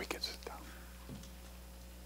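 Quiet room tone with a steady low electrical hum, broken by a few faint rustles and soft clicks in the first half second.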